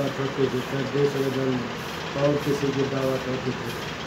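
A man talking in a low, steady voice, quieter and less distinct than the speech around it.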